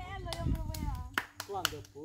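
Quiet voices talking in the background, with several short sharp clicks or claps in the second half.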